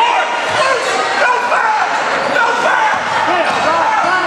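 A basketball bouncing on a hardwood gym floor during a game, under overlapping shouting voices from the sideline and spectators.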